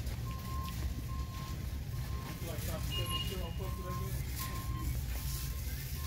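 Electronic warning beeper sounding one high tone over and over, about two beeps a second, over a steady low rumble of store background noise.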